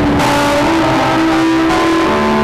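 A woman singing into a microphone over backing music played through a PA system, holding one long note.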